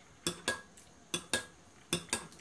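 Metal spoon clinking against the inside of a ceramic mug while stirring, about five light clinks, roughly in pairs.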